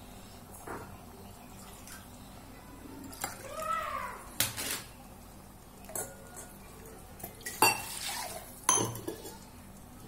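A metal ladle knocking and scraping against the sides of a stainless steel pressure cooker while a simmering mutton curry is stirred. The sound comes as a handful of separate clinks, the loudest about three-quarters of the way through.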